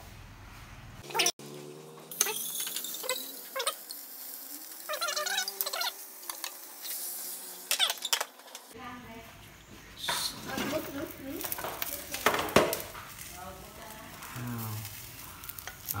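Rice-flour bánh xèo batter sizzling in a hot nonstick frying pan, mixed with clinks and knocks of pans, a glass lid and chopsticks on the stove, the sharpest knock coming about three quarters of the way through.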